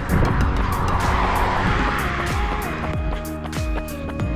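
A car passing on the road, its tyre noise swelling and then fading away over the first three seconds, over background music with a steady beat.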